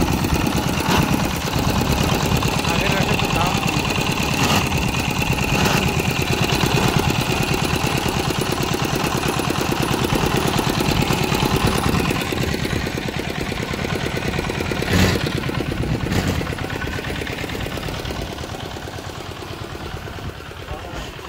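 Small stationary single-cylinder diesel engine running steadily, belt-driving a sugarcane juice crusher whose rollers are squeezing cane. The running fades over the last third, and two sharp knocks come about three-quarters of the way through.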